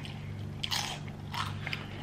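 Crisp fried spring roll bitten and chewed close to the microphone: two crunches, one under a second in and one about a second and a half in, with small mouth clicks between.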